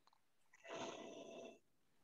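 Near silence on a video call, with one faint sound about a second long in the middle.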